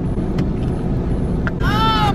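Low steady rumble of a car idling, heard from inside its cabin. A voice cuts in near the end.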